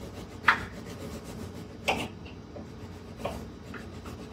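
Three short rubbing or scraping noises, about a second and a half apart, the first the loudest, over a faint steady low background hum.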